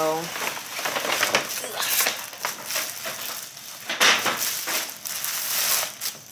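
A paper takeout bag and a plastic bag rustling and crinkling as the plastic bag of food is pulled out of the paper one: a continuous run of crackly rustles with a loud burst about four seconds in.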